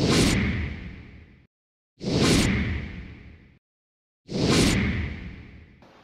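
Three whooshing hit sound effects, about two seconds apart, each striking suddenly, dying away over a second and a half and then cut off to dead silence.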